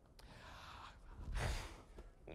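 A man's breathy exhale, a soft rush of breath followed by a louder puff of air about a second and a half in.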